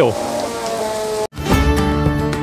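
Wooden noria waterwheel turning, with a steady wash of falling, splashing water and a faint sustained creaking tone, a noise called noisy. It cuts off suddenly about a second in, and background music with plucked guitar begins.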